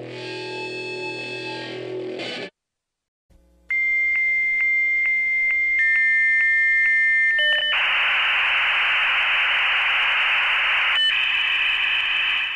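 A short electronic music sting with a held chord that cuts off after about two and a half seconds. After a short gap, a steady high electronic tone with about three clicks a second, stepping down in pitch partway, gives way to a loud static-like hiss.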